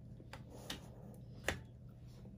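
A few light clicks and handling sounds from a USB plug at a laptop's side USB port, with one sharper click about one and a half seconds in, over a faint low hum.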